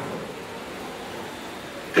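Steady hiss of background noise with no distinct events: the room and recording noise floor.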